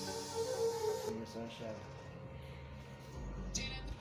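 Music starting to play quietly from a homemade speaker box built from car-audio speakers, a melody of shifting notes, with a deep bass note coming in near the end.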